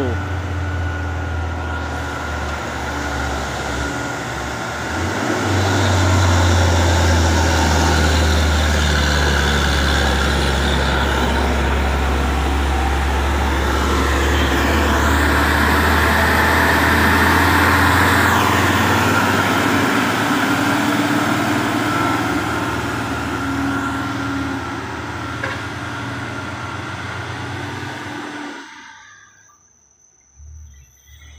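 Diesel engine of a loaded Hino truck pulling steadily uphill in a low gear, a deep drone that grows louder about five seconds in as the truck passes close, then eases off and cuts off shortly before the end.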